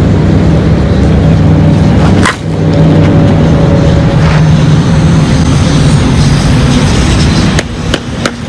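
A steady low engine hum runs loudly throughout. About two seconds in, a sharp crack of a softball bat striking a pitched ball cuts through it.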